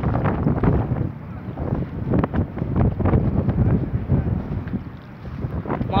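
Wind buffeting a phone's microphone: a rumbling rush that rises and falls in uneven gusts, easing briefly about five seconds in.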